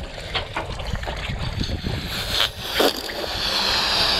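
Breath blowing up a small latex balloon in long puffs, a steady hiss from about halfway through, over water lapping at a boat's hull and wind on the microphone, with a few light knocks.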